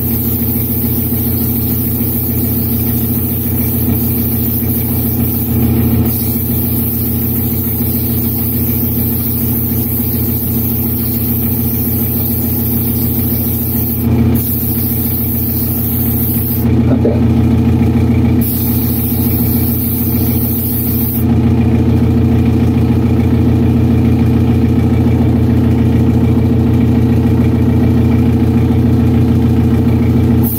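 Steady hum of a spray booth's exhaust fan, with the hiss of an airbrush spraying paint in spells. The airbrush hiss stops about two-thirds of the way through, leaving the fan alone.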